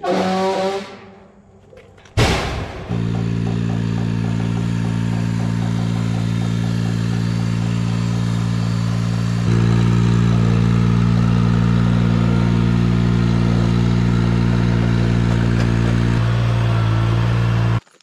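A sharp clatter about two seconds in, then the Ventrac 4500Z compact tractor's engine running steadily at an even pitch, getting louder about halfway through.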